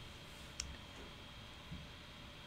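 A quiet pause: steady low room hum with one faint short click about half a second in.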